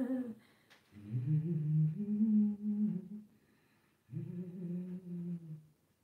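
A woman humming two low, sustained phrases, each about two seconds long, with a short pause between.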